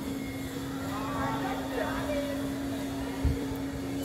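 Outdoor ambience: a steady low hum runs throughout, with faint distant voices about a second in and a short knock near the end.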